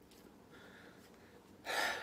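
A man breathing faintly, then a sharp, audible intake of breath near the end, just before he speaks.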